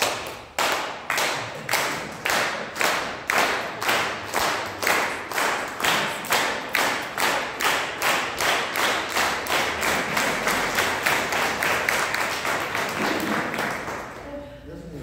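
Audience clapping in unison, about two claps a second, loosening into ordinary applause over the last few seconds and then stopping.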